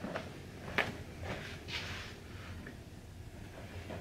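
Faint footsteps on a hard floor with a few light clicks and soft rustles, the small handling noises of someone walking and moving a camera on a hiking pole.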